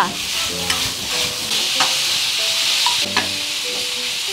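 Food sizzling as shredded vegetables are stir-fried in a wok over a gas burner: a steady hiss with a few faint clicks.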